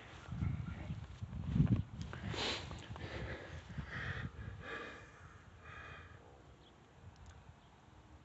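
Footsteps walking on grass, a few soft low thuds in the first two seconds, then fainter rustling that dies away as the walker stops.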